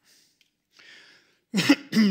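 A man clearing his throat, starting about a second and a half in after a near-quiet pause.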